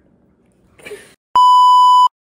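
Television colour-bars test tone: a single loud, steady high beep that starts abruptly about two-thirds of the way in, right after a brief drop to dead silence.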